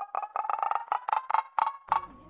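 TV-edit 'thinking' sound effect: a quick run of light, chime-like ticking notes, about eight a second, that stops just before the two seconds are up.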